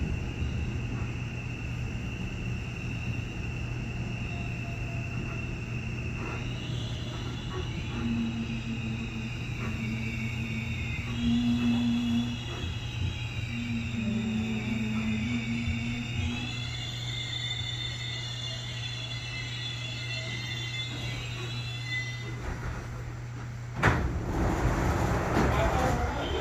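Electric commuter train's motors whining in several steady high tones that shift pitch in steps as the train slows into a station, over a constant low hum. Near the end the train stands at the platform and a sudden, louder burst of noise sets in as the doors open.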